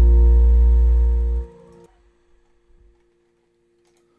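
The closing chord of a song's instrumental accompaniment, acoustic guitar to the fore over a deep bass, rings on and then cuts off about a second and a half in, leaving near silence with only a faint lingering tone.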